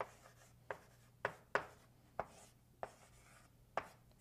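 Chalk writing on a blackboard: a faint run of short chalk taps and strokes, about seven in four seconds, irregularly spaced.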